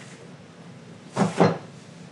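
Two quick knocks, about a fifth of a second apart, a little over a second in, over a low steady room background.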